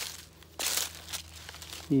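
Dry, cut corn leaves crunching and rustling in a few short bursts, the loudest about half a second in.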